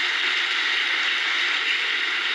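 Audience applauding, a steady, dense clapping that holds level throughout.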